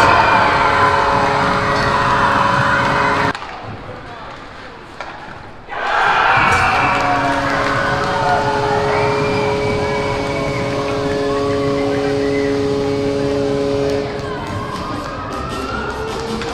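Ice hockey arena sound after goals: crowd cheering over amplified arena sound. A steady multi-note tone is held for about eight seconds in the middle. The sound drops away briefly about three seconds in, where the footage cuts.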